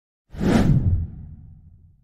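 Whoosh sound effect for a logo reveal, starting suddenly about a third of a second in, with a deep rumble that fades away over the next second and a half.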